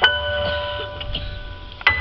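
Stage keyboard playing a bell-like sound, two struck chords that ring on and slowly fade: one at the start and another just before the end.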